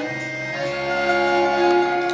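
Instrumental bridge of a slow waltz between sung verses: accordion-like held chords with backing instruments, no voice.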